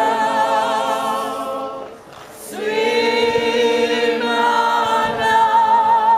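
Procession walkers singing a hymn together without accompaniment, in long held notes with vibrato; the voices break off for a breath about two seconds in and then take up the next phrase.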